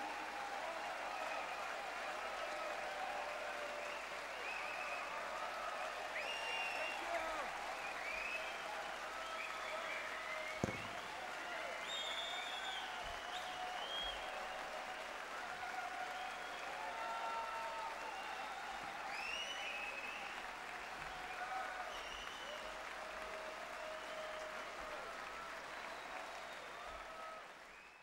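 Concert hall audience applauding steadily, with scattered voices and calls from the crowd over the clapping and a single sharp knock about ten seconds in; the applause fades out at the very end.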